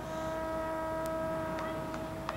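Marching band holding one soft, steady sustained note right after a loud brass chord cuts off.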